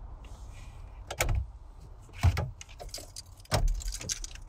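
Three sharp clicking knocks about a second apart as things are handled inside a car, over a low steady hum.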